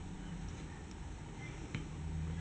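Quiet room tone with a steady low hum, and one faint click near the end.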